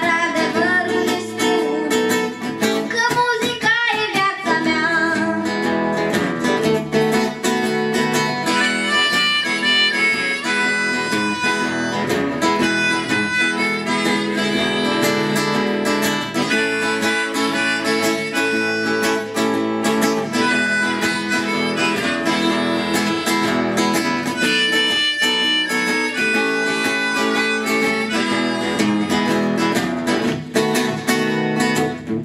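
Two acoustic guitars strumming together with a harmonica, played from a neck rack, carrying the melody over them.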